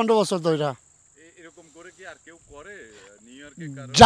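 Crickets trilling as one steady, unbroken high note behind a man's voice.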